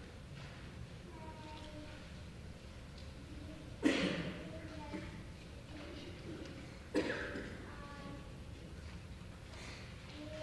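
Soft, high-pitched voices, most likely children answering a question: two short utterances that start abruptly about four and seven seconds in, over faint room noise.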